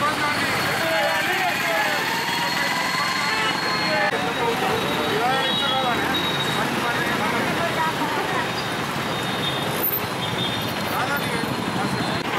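Street traffic noise, a steady hum of passing vehicles, with indistinct voices of people nearby.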